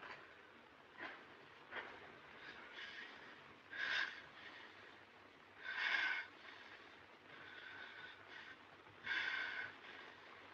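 A man's short, sharp breaths or gasps, the loudest about four, six and nine seconds in, after a few faint clicks in the first two seconds.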